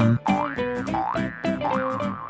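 Cheerful children's background music with plucked notes on a steady beat. About three springy sliding-pitch boing effects sound through it.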